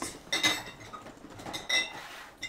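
Hard containers clinking while being handled on a desk: two clinks, about half a second in and near the end, each ringing briefly.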